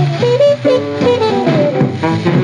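Bebop small-band jazz from a 1946 78 rpm shellac record: a fast saxophone line over guitar, bass and drums.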